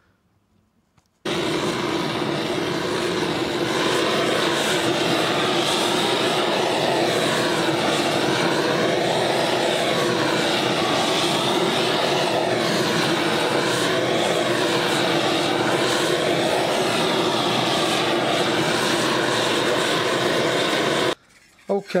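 Gas torch flame burning with a steady roar as it heats a flanged copper boiler plate to anneal it, softening copper that has work-hardened during flanging. The roar starts suddenly about a second in and stops abruptly just before the end, its tone slowly wavering throughout.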